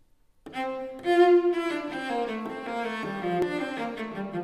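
Solo cello, bowed, starting about half a second in and playing a moving line of notes.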